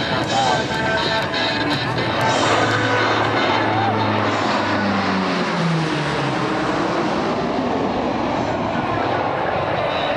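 C-130T Hercules four-engine turboprop making a low, fast pass. The propeller drone drops in pitch between about four and six seconds in as it goes by, then turns into a broad rushing sound that eases off slowly as it banks away.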